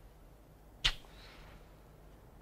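A single sharp slap of hands about a second in, with a short echo off the stone vaults.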